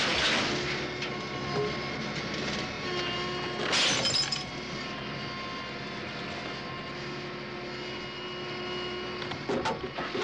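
Film soundtrack of a Lincoln Continental being crushed in a car crusher: metal crunching and glass breaking, with a louder burst of crushing about four seconds in, over a steady hum of tones.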